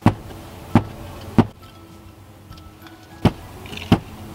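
A hammer knocking on a carpeted car floor, five sharp knocks: three about two-thirds of a second apart, a pause, then two more. The knocks sound hollow, the sign of enough padding or space under the carpet for the floor-mat anchor's spikes.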